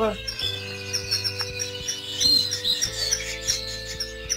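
Many canaries chirping and twittering: short high calls coming thick and fast, over steady held low tones.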